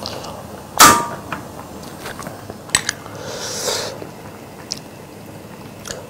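A loud metal clang with a brief ring about a second in, followed by a couple of lighter clinks and a soft scrape: a metal utensil against a stainless-steel cooking pot as stew is dished out into a bowl.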